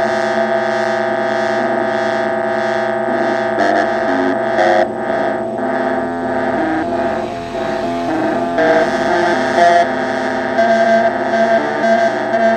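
Synthesizer drone from a homemade Pure Data patch (two oscillators with LFO-swept filter) played through a Honeytone mini guitar amp: layered steady tones with a short sequence of notes stepping back and forth underneath and a rhythmic filter pulse. About halfway through it turns noisier for a few seconds, then settles back.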